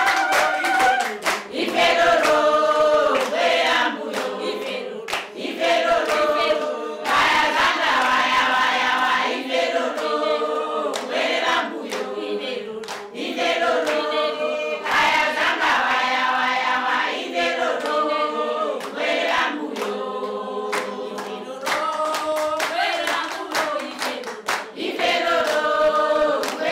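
A group of voices singing together a cappella, with steady hand clapping in time.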